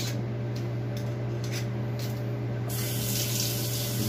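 Kitchen tap turned on about two-thirds of the way in, water running onto a spoon and into a stainless-steel sink, over a steady low hum.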